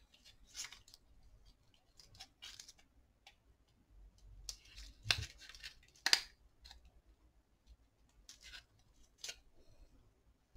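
Faint, scattered clicks and crinkles of hands working thin mica insulating sheet in among the cells of a lithium-ion battery pack. The sharpest snaps come about five and six seconds in.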